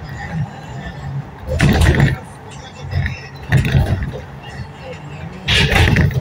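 Steady low drone of a moving road vehicle heard from inside. Three louder bursts come about two seconds apart: about a second and a half in, halfway through, and near the end.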